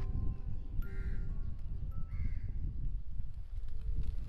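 A crow cawing twice, about a second apart, over a low steady rumble.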